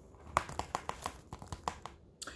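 Paper pages and cards of a handmade junk journal being handled: a quick, irregular run of small crinkles and clicks starting about a third of a second in and stopping just before the end.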